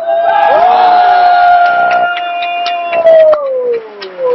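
A man's loud, drawn-out shout on one held vowel. It stays on one pitch for about three seconds, then slides down and fades, with a few sharp claps or knocks in its second half.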